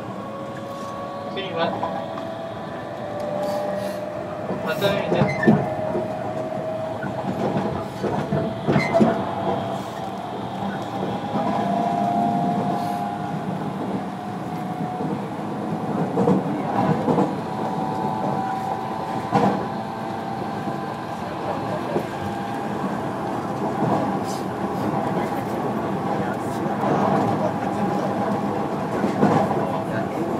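Onboard running sound of a JR Kyushu 305 series electric train in its motor car. The VVVF inverter and traction motor whine climbs in pitch over the first ten seconds or so as the train gains speed, then holds fairly steady over the running rumble. Occasional sharp clicks come from the wheels over rail joints.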